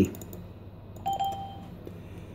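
A single short electronic chime from the laptop's speaker, about a second in, holding one pitch for well under a second, as a media item's pop-up window opens on screen.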